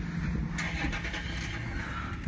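Car engine running at idle, heard from inside the cabin as a steady low hum.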